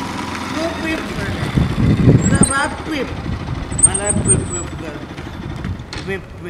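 A motorcycle engine running and pulling away, swelling about two seconds in and again later, with men's voices over it.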